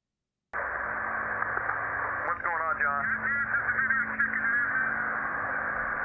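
Two-way radio static cutting in abruptly about half a second in: a narrow, tinny hiss with a steady low hum under it, and faint wavering voice-like sounds coming through it in the middle.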